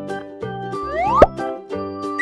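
Children's background music with a cartoon sound effect: a rising whistle that ends in a sharp pop about a second and a quarter in.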